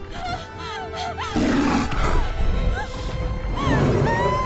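Film score music with a bear roaring and growling in an animated attack scene.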